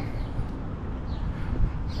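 Steady low rumble of outdoor street background: wind on the microphone and distant traffic.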